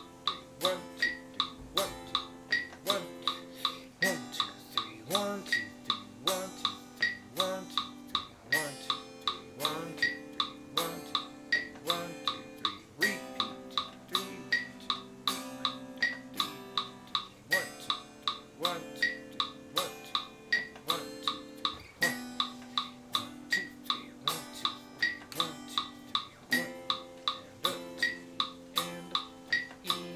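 Electric guitar strumming slow seventh chords (Cmaj7, Dm7, Em7, Fmaj7), each chord ringing for a beat or more, along with a metronome's regular clicks, about three a second.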